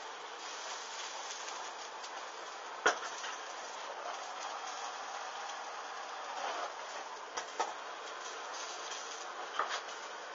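Lace-trimmed panties burning: a steady low rush of flame with a few sharp crackles, the loudest just before three seconds in and a few more in the last three seconds.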